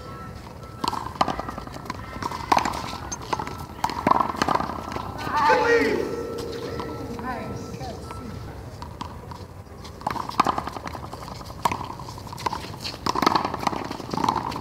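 One-wall handball rally: a small rubber ball is slapped by hand and smacks off the concrete wall and court in an irregular series of sharp knocks. A player shouts briefly about halfway through.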